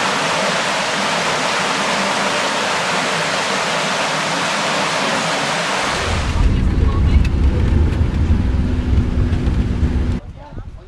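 Steady hiss of rushing water in a cave, loud and unbroken. About six seconds in it changes abruptly to the low rumble of a vehicle engine with wind buffeting, as when riding along a road.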